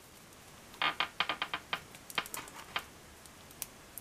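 Light plastic clicks and taps as a pickaxe accessory is worked into an action figure's hand: a quick run of about a dozen small ticks starting about a second in, with one more near the end.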